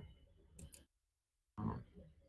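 Two quick, faint computer mouse clicks a little past half a second in, followed near the end by a short low murmur of a voice.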